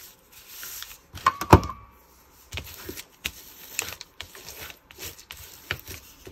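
Thin used tea bag paper rustling as it is pressed and rubbed flat by hand over a glued paper tag. A single sharp knock comes about a second and a half in, followed by a string of short rubbing and tapping sounds.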